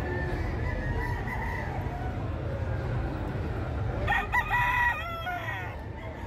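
A gamecock crowing once, about four seconds in, a pitched call that rises, holds and falls away, over a steady low rumble.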